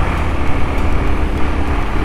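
Wind buffeting the microphone of a moving motor scooter, a loud low rumble over the scooter's running engine, with a faint steady engine hum from about a quarter second in until near the end.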